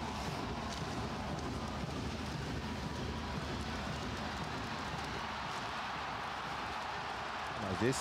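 Steady din of an ice hockey arena crowd, many voices blending into an even roar, with a few faint clacks of sticks and puck on the ice.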